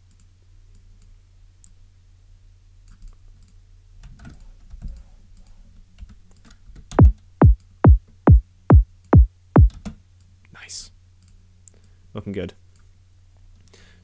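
Synthesized drum and bass kick drum, a freshly bounced low-end layer, played back seven times in quick succession, about two hits a second. Each hit is a fast downward pitch sweep into a deep low-end boom.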